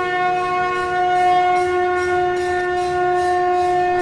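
Conch shell trumpet (shankha) blown in one long, steady note that stops at about four seconds: the war-conch signal sounded before battle.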